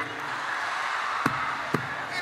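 Two sharp knocks of hard-soled leather loafers stepping on a stage floor, about half a second apart, over steady crowd noise.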